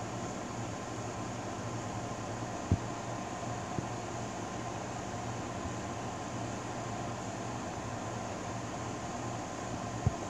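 Steady machine hum with an even hiss, of the fan or air-conditioning kind, with one brief knock about three seconds in.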